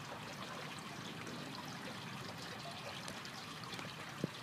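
Steady trickling and lapping of pond water as a swimmer moves through it, pushing a floating raft.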